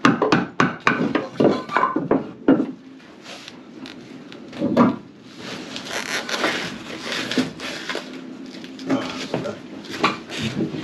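Plywood panel being handled while it is fitted: a quick run of wooden knocks over the first couple of seconds, another knock near the middle, then several seconds of scraping and rubbing.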